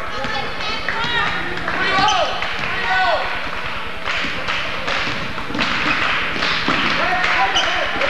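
Game sounds in a school gym: a basketball being dribbled on the hardwood court and short squeaks of sneakers on the floor, over crowd voices echoing in the hall.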